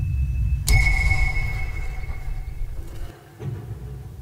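A sharp, bright ping about a second in that rings out for a couple of seconds, over a steady low rumble in the show's soundtrack.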